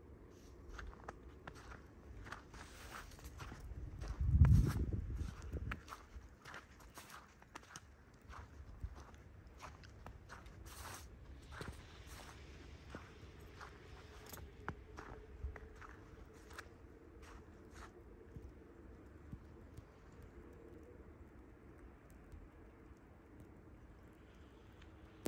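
Footsteps in fresh snow, a step about every half second, thinning out in the second half. A loud low rumble swells and fades about four seconds in.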